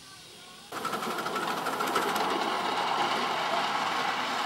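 A loud, rapid mechanical clatter cuts in abruptly about a second in and runs on steadily.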